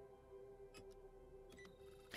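Near silence: a faint steady hum of held tones, with a few faint clicks just under a second in and again about halfway through.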